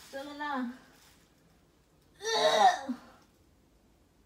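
Two short wordless vocal sounds from a person, about two seconds apart, the second louder.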